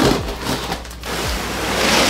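Cardboard box and plastic wrapping rustling and scraping as a soft-sided suitcase is pulled out of its shipping box, with a few light knocks; the rustling grows louder toward the end.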